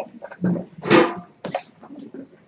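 Classroom bustle of students collecting textbooks: scattered short knocks, taps and rustles, with a louder noisy burst about a second in.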